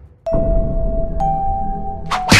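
A two-note chime sound effect in the soundtrack: one held tone, then a slightly higher tone joining about a second in, over a low droning background.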